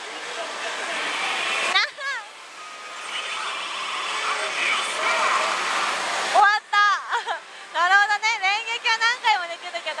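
Pachislot slot-machine effect sounds over the din of a pachinko parlour: a noisy sound swells for about six seconds, then breaks into a run of quick, bright, voice-like calls.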